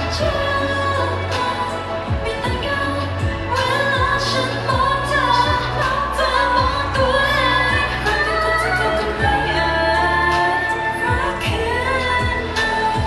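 A Thai pop song performed live: a singer's voice over a backing track with a sustained bass line and a steady kick-drum beat.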